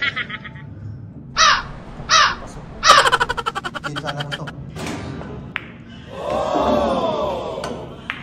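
Men's wordless shouts and calls of reaction over a pool game: two short rising yelps, a fast rattling burst, then a long drawn-out call that rises and falls in pitch.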